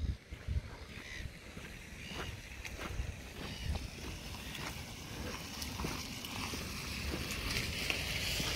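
Wind rumbling on the microphone, with scattered soft footsteps on grass and gravel.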